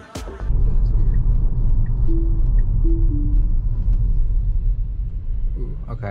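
Music cuts off just after the start, leaving a loud, steady low rumble of tyre and road noise inside the cabin of an electric Tesla Model Y driving on a city street. A few short, soft tones sound in the middle.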